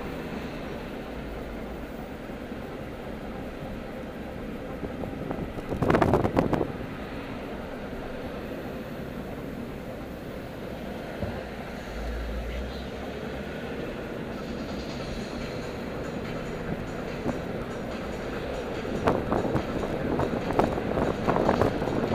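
Road and engine noise inside a moving car's cabin: a steady rumble and hiss. There is a brief loud burst about six seconds in, and the noise grows louder and choppier over the last few seconds.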